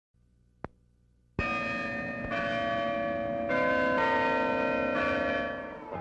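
Church bells pealing: a loud first stroke about a second and a half in, then several more strokes whose tones overlap and ring on, fading away near the end. Before the bells there is a faint low hum and a single click.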